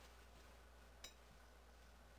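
Near silence, with a single faint, sharp click about a second in.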